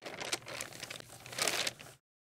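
Paper crumpling and crinkling as a sound effect on an animated logo, crackly throughout, with a sharp spell about a third of a second in and a louder one around one and a half seconds in.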